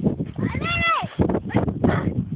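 A small dog gives one high-pitched whine that rises and falls, about half a second long, starting about half a second in.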